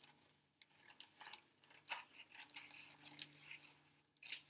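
Faint, scattered snips and crisp rustles of scissors cutting through a thin paper napkin.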